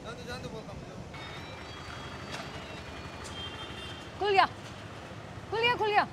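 Steady traffic and forecourt background noise, with two short voice calls cutting in, one about four seconds in and one near the end.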